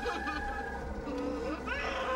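A steady buzzing drone of many layered tones, with a few pitches sliding upward near the end.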